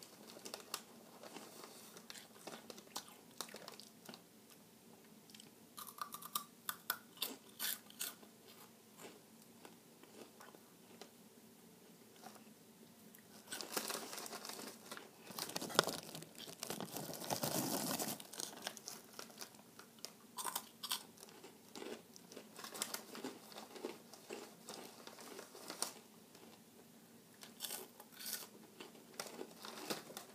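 Chewing and crunching of Flamin' Hot Cheetos, crisp corn snacks, heard as scattered sharp crunches close to the microphone. About halfway through there is a louder, denser spell of crunching and rustling.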